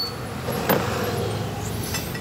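Steady background hum with two light metallic knocks, one at the very start and one under a second in, as steel cam sprockets are handled over the cylinder head.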